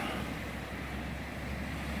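Steady outdoor background noise: a constant low hum under a faint, even hiss, with no distinct events.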